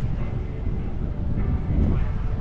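Wind noise buffeting the microphone of a moving skier, over the scraping hiss of skis running across chopped-up snow.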